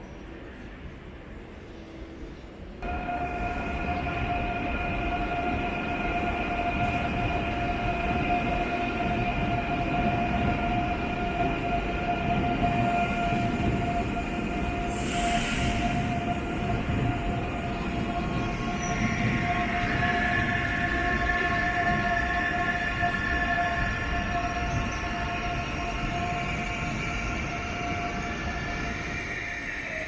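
Dutch NS electric passenger trains in a station: a steady electric whine of several held tones over a low rumble, starting suddenly about three seconds in. A short high hiss comes about halfway through, and a second set of tones joins about two-thirds in.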